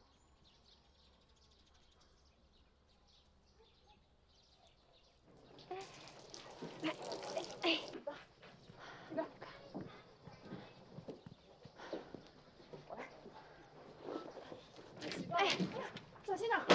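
Near silence for about five seconds, then women's voices talking, with irregular handling noises.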